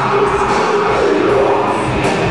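A heavy metal band playing live at full volume, with distorted electric guitars, bass and drums.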